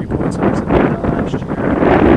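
Wind buffeting the microphone: a loud, rushing rumble without any pitch, growing stronger toward the end.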